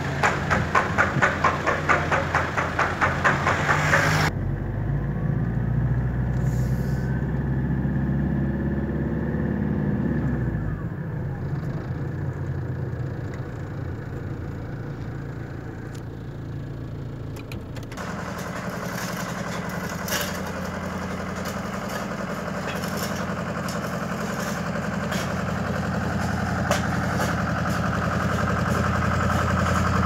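Car engine running with road noise from inside a slowly moving car. A rapid pulsing flutter fills the first few seconds, then the engine pitch slides as the car slows. Past the middle it settles into a steady idle with a few scattered clicks.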